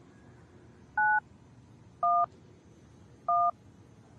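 Skype dial pad keying 9-1-1: three short touch-tone beeps about a second apart. The first beep (the 9) is higher-pitched than the two matching beeps that follow (the 1s).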